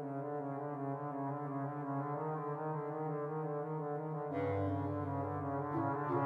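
Trombone and bass clarinet duet in G minor. The trombone plays a soft, slurred line of repeated notes, and about four seconds in a lower sustained note enters beneath it, from the bass clarinet.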